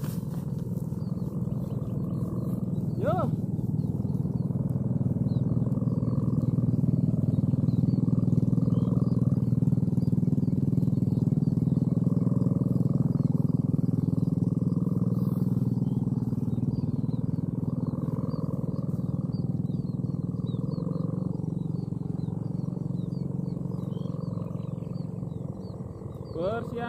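Sendaren, the bow-shaped hummer strung across a large kite, droning low and steady in the wind as the kite climbs. The hum swells a few seconds in and eases slightly toward the end.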